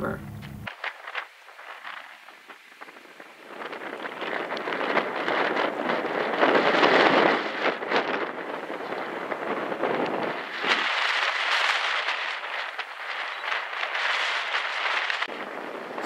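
Ocean surf breaking, a rushing hiss that builds up twice and eases off in between.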